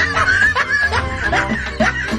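Laughter, a snickering chuckle, over background music.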